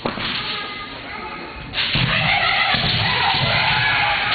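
Kendo fencers' kiai shouts: long, drawn-out yells that break out loudly just under two seconds in and carry on, after a sharp clack of bamboo shinai at the start.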